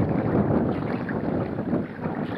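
Water splashing and churning as a bull swims through a pond.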